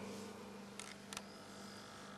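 Faint, steady mains hum from the Intel CD 2100 cassette deck's noisy power transformer, with two light clicks about a second in.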